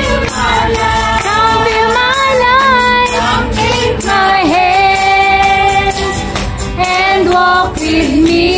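Worship song sung by a group of singers over instrumental accompaniment, with long held notes in the middle.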